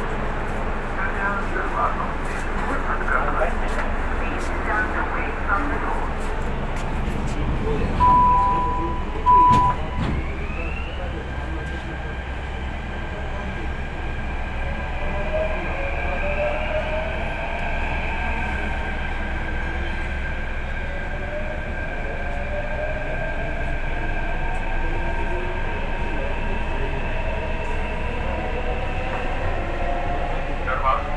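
Delhi Metro train at a station: two steady door-closing warning beeps about eight seconds in, then the train pulls away. Its traction motors whine in rising tones as it gathers speed, over the steady rumble of the car.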